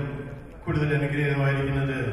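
A man chanting a prayer into a microphone in long notes held on one steady pitch. One phrase ends just after the start, and the next begins under a second in.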